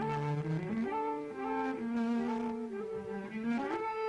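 Flute and cello playing a duet in held notes that change pitch every half-second or so.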